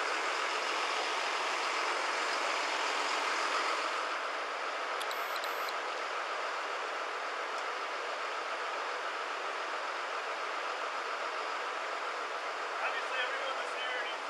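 Steady background noise of vehicle engines idling, picked up by a body-worn camera's microphone. A brief high electronic tone sounds about five seconds in, and faint voices come in near the end.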